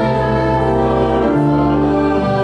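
Pipe organ playing sustained chords, with a congregation singing along; the chord changes about one and a half seconds in.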